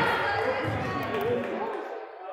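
Indistinct voices of players and spectators calling out across a gymnasium during a basketball game, dying away toward the end.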